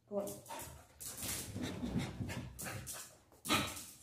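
A dog panting in quick, repeated breaths, with a sudden louder burst of noise about three and a half seconds in.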